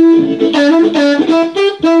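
Blues harmonica played in short, rhythmic, drum-like notes. It opens on a held note, then a note is bent down and released back up partway through.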